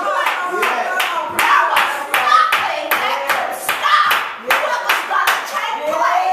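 Rhythmic hand clapping in a steady beat of about three claps a second, with a voice carrying on over it.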